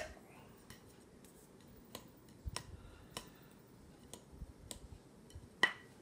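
Quiet room tone broken by a few faint, sharp clicks at irregular intervals, with one louder click near the end.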